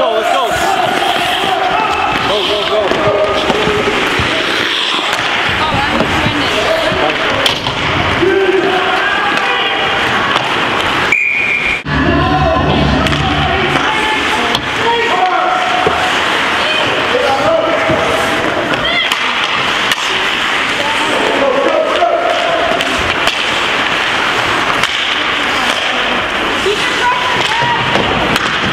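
Spectators in an ice rink calling and shouting over game noise, with scattered knocks of sticks and puck against the boards. A short, high referee's whistle sounds about eleven seconds in, stopping play.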